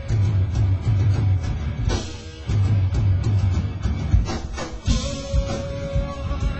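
A rock band playing live: electric guitar, bass and drum kit over a pulsing low end, with two big crashing hits about two and five seconds in.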